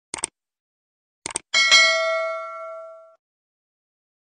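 Subscribe-button sound effect: two quick mouse clicks, two more about a second later, then a single notification-bell ding that rings and fades over about a second and a half.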